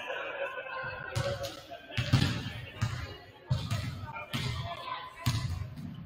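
Basketball bouncing on a hardwood gym floor, about six thuds roughly a second apart, with voices chattering in the background.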